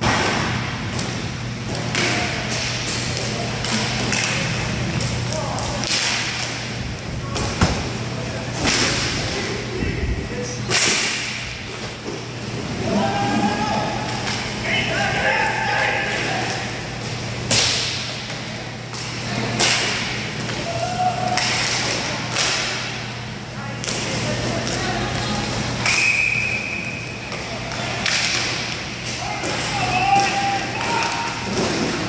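Inline hockey play: sticks and puck clack and thud on the tiled floor and against the boards, again and again at irregular moments, over a steady low hum from the hall.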